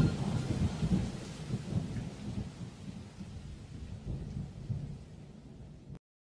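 Mercedes-AMG C63 coupe's V8 exhaust rumbling and burbling as the car pulls away, fading steadily into the distance until the sound cuts off suddenly at the end.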